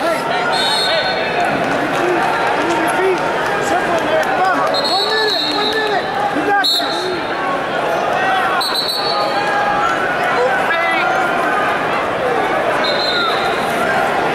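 Busy wrestling-tournament arena: many voices calling and shouting at once from coaches and the crowd, with about five short referee whistle blasts from the mats. A sharp thump comes about halfway through.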